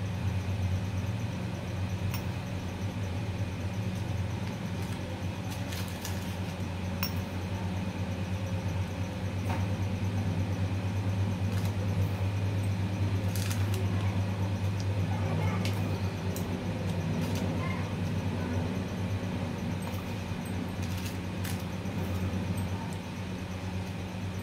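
Scattered light clicks and clinks as sliced nuts are sprinkled by hand over barfi in a foil tray, over a steady low hum.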